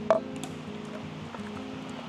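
Soft background music with steady held notes, and a single short click just after the start.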